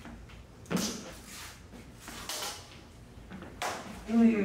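Dueling lightsaber blades clashing and swinging in a bout: a few short knocks and swishes, the loudest a sharp clack about three-quarters of a second in.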